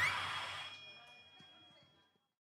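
Amplified live keyboard music with a voice over it, fading out steadily to silence within about two seconds.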